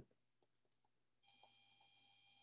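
Near silence, with a few faint ticks of a stylus writing on a tablet screen and, from a little over a second in, a faint steady high electronic whine.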